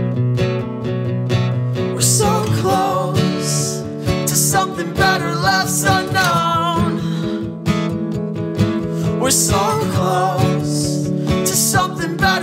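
Acoustic guitar strummed steadily, with a man singing over it in phrases, his held notes wavering with vibrato.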